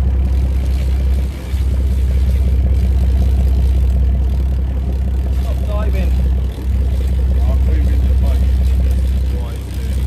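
Boat engine running steadily, a loud low drone that dips briefly three times, with faint voices in the background.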